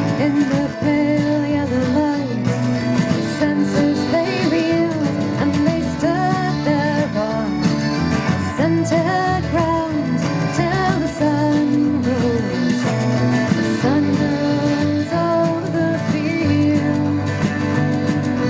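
Live folk song played on acoustic guitar, accordion and electric bass, with a woman singing over the band.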